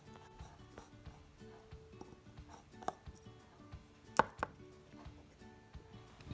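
A few small, sharp metallic clicks, about three and four seconds in, as a small screwdriver works the tiny screws out of a micrometer's digit-counter housing. The clicks are faint.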